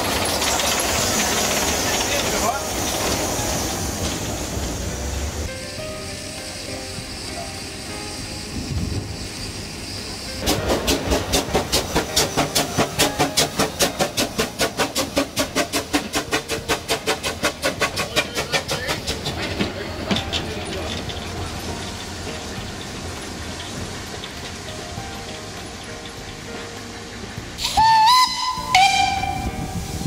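Small narrow-gauge tank steam locomotive hissing steam, then pulling away with a run of rapid, even exhaust chuffs, steam venting from the cylinder drain cocks. Near the end its steam whistle gives two short blasts.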